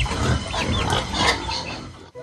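Domestic pigs grunting in a concrete pen, repeated low grunts with short high chirps over them, dying down near the end.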